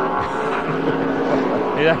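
V8 engines of NASCAR stock cars running at speed through a road-course corner, a steady drone of several pitches heard over the TV broadcast.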